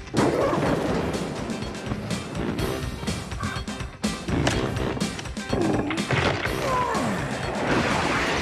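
Dramatic film score music with sharp hits as a wolf-like mutant creature strains against a wooden telephone pole. Curving snarl-like cries come from about five and a half seconds in.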